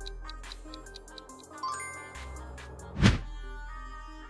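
Light background music with a ticking timer beat, about four clicks a second. About three seconds in, a short loud transition sound effect as the screen wipes to the next question.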